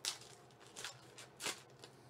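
Foil wrapper of a Panini trading-card pack crinkling in the hands, in three short sharp crackles: one just after the start, one just under a second in and one about a second and a half in, with fainter rustles between.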